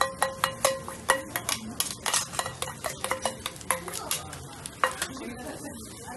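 Metal spoon clinking rapidly and unevenly against a stainless steel mixing bowl as okonomiyaki batter is stirred and scraped out, over the steady sizzle of the hot griddle. The clinking stops about five seconds in, leaving the sizzle.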